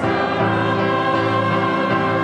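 Mixed church choir singing a Korean anthem, holding sustained chords that change just after the start.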